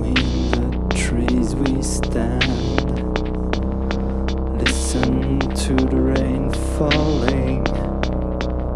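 Electronic music intro played on synthesizer and drum machine: a steady low synth drone under a run of sharp drum-machine ticks, with a few short wavering synth notes.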